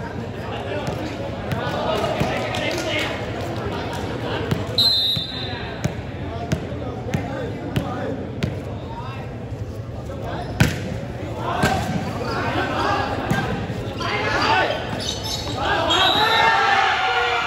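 A volleyball bounced repeatedly on a hard concrete court, about two knocks a second, then a single sharp hit of the ball a little past the middle. Crowd and player voices chatter throughout and grow into louder shouting after the hit.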